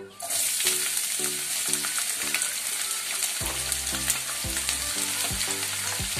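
Chopped vegetables sizzling in hot oil in a pot. The sizzle starts suddenly as they go in, just after the start, and then holds steady as they fry.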